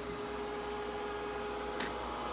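Cooling fans of a Dragonmint T1 ASIC bitcoin miner running steadily at about 44% speed inside a soundproofed enclosure: a steady whir of air with a faint constant tone. A short click near the end.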